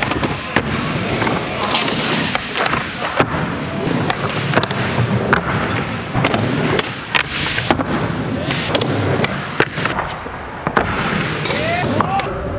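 Skateboard wheels rolling over concrete ramps, broken by frequent sharp clacks and slaps of the board and wheels striking the surface, echoing in a large hall.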